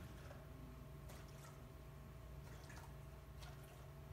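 Faint drips of water falling into a small cup: a few soft ticks over a steady low room hum.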